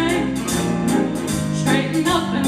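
A jazz big band playing a swing tune behind a female singer, with sustained low notes under her voice and a steady cymbal beat about twice a second.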